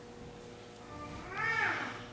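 A single short, high-pitched call about one and a half seconds in, its pitch rising then falling, over a faint steady hum.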